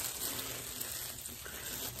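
Soft, steady rustling of plastic-gloved fingers working hair dye through curly hair, over a faint hiss.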